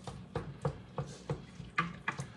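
Red meat chopper jabbed repeatedly into ground beef cooking in a pot, breaking up the meat into crumbles: a run of short knocks, about three a second.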